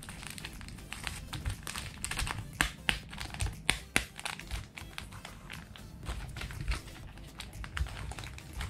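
A plastic feed pouch crinkling and rustling as it is handled, with irregular sharp clicks and taps, over background music.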